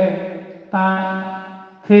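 A man's voice intoning long held notes on one steady pitch: the first fades out, and a second begins a little under a second in and fades in turn, in the drawn-out chanting manner of a katha reciter.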